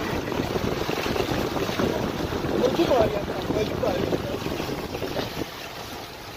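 Wind rushing over the microphone of a camera held outside a moving car, with tyres hissing through slush and wet snow. The rush eases about five and a half seconds in.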